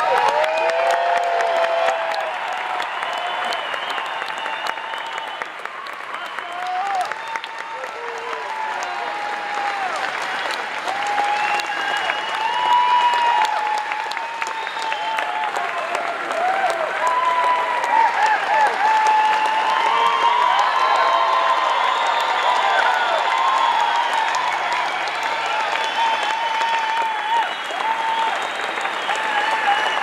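Large concert crowd applauding and cheering, with shouts rising over the steady clapping.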